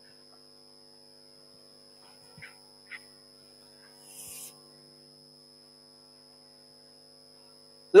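Steady electrical mains hum made of several constant tones, with two faint ticks a little before the middle and a short, high, scratchy sound about four seconds in as chalk touches the blackboard.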